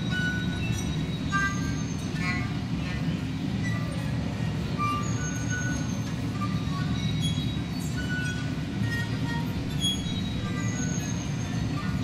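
Experimental solo violin with a recorded sound bed: a steady low rumbling noise runs throughout, and short, scattered high whistling notes sound over it, a few of them sliding slightly downward in pitch.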